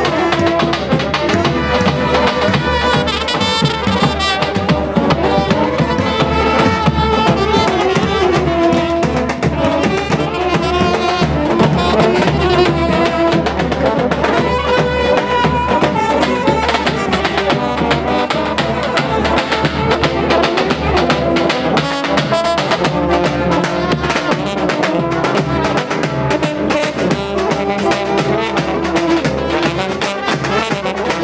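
Live street brass band playing: trumpets and a tuba-type bass horn carry the tune over a steady bass drum beat.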